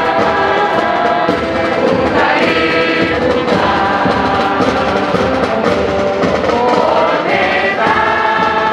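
A large group of voices singing a song together, like a choir.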